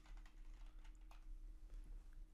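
Faint typing on a computer keyboard: a run of light, irregular keystrokes as a short phrase is typed.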